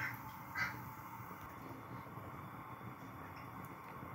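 Quiet room background with a faint steady hiss, and two soft, brief sounds in the first second, about half a second apart.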